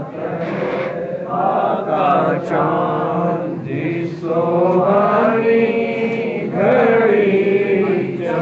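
Men chanting a devotional chant together in long sung phrases, with held notes that glide up and down.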